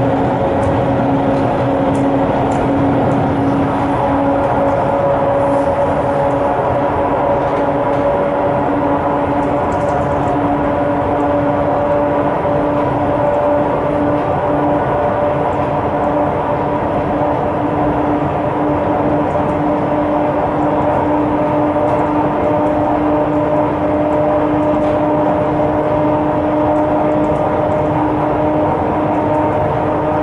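ER2K electric multiple unit heard from inside the passenger car while running. There is a steady rumble and hum, and a whining tone in it rises slowly in pitch.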